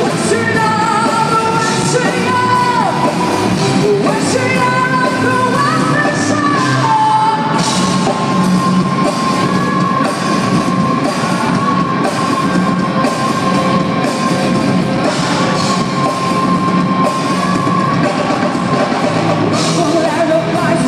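Live rock band playing on stage: a woman singing over drums and bass guitar in a large hall. A long sustained high note is held from about seven seconds in until near the end.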